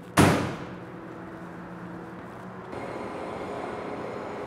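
A single loud hit about a quarter of a second in, dying away over about half a second, then a steady low hum with faint steady tones; near three seconds in the background changes to a brighter, hissier hum.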